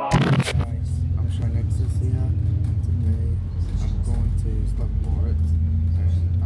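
Bus engine and road rumble inside the passenger cabin: a steady low drone, with faint voices over it. A short loud burst right at the start.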